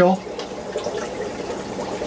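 Steady trickle of running aquarium water, an even low hiss with fine bubbling.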